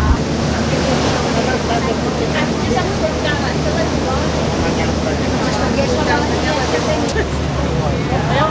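Tour boat under way: the engine runs with a steady low drone under a continuous rush of water and wind, with people's voices faintly in the background.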